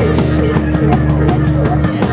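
Experimental improvised rock recorded on four-track tape: bending electric guitar notes over a held bass note, with drums.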